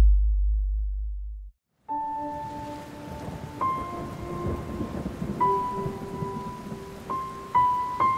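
A deep thunder rumble fading out over the first second and a half, then, after a brief silence, steady rain hiss with slow sustained music notes over it.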